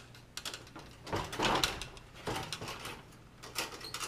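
Wires being pushed and tucked into a sheet-metal high bay light fixture: light clicks and taps, with a longer scraping rustle about a second in.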